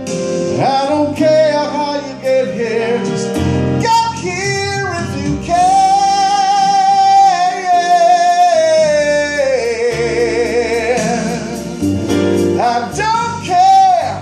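A man singing a slow ballad into a microphone over backing music with guitar, holding long notes with vibrato, one of them for about four seconds midway.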